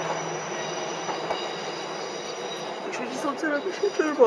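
A vehicle's steady mechanical noise with several faint, high, steady whines running through it.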